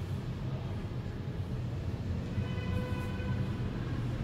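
Low steady background rumble, with a faint held pitched tone, like a distant horn, coming in about two and a half seconds in.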